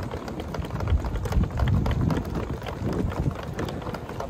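Footsteps on paving, a quick irregular run of clicks, over a heavy low rumble from the handheld microphone as it is carried along.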